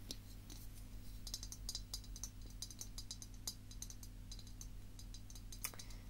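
Fingernails tapping and scratching lightly on a hard object, an irregular patter of small quick clicks, busiest a second or two in, over a steady low hum.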